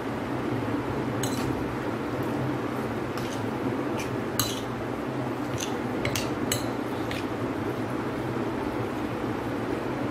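A metal spoon clinking and scraping against a plate as beef pieces are mixed with spices and sauce: about a dozen short clinks through the first seven seconds, over a steady background hum.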